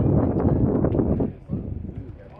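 Indistinct background voices with wind noise on the microphone; the sound drops away sharply about a second and a half in.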